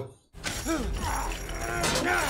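Fight-scene soundtrack from a TV episode: over a low rumble, a strained vocal cry rises and falls in pitch about a second in, and a sharp crack comes near the end.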